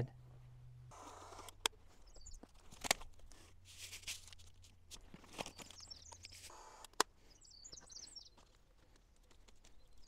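Faint knocks and clicks of hand work on a door sill, with a few sharper knocks. Birds chirp faintly in the background now and then.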